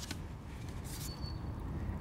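Outdoor background noise: a steady low rumble, with one brief, faint, high whistle-like tone about a second in.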